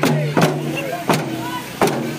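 Sticks beaten in a steady rhythm on plastic containers, a jerrycan and a bottle. There are four sharp strikes, roughly two-thirds of a second apart, with voices under them.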